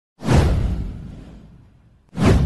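A whoosh sound effect with a deep low rumble under it. It swells up suddenly a moment after the start and dies away over about a second and a half.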